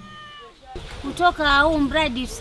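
A cat meowing once: one short call, slightly falling in pitch, lasting about half a second. A woman starts speaking about a second in.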